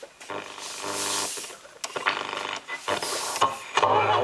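Radio of a 1980s Toshiba SM 200 stereo music centre being tuned: broken snatches of broadcast and hiss, with a station playing music coming in clearly near the end.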